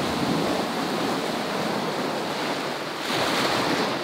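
Ocean surf breaking and washing in over the shore, a steady rush of waves with a louder surge about three seconds in.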